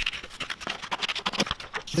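Scissors cutting through a sheet of sublimation print paper: a quick, irregular run of crisp snips and paper scratching.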